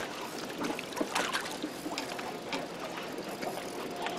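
Water sloshing and splashing around a small fishing boat as a hooked fish thrashes at the surface, with a few light clicks, the loudest about a second in.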